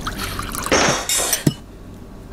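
Liquid poured from a porcelain pot with a spout into a porcelain bowl, a rushing pour that swells in the middle and stops after about a second and a half, ending in a single sharp knock.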